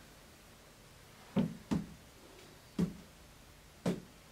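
Birdseed-filled beanbag juggling balls set down one after another on a cloth-covered table: four short, dull thuds, two close together about a second in, then two more a second apart.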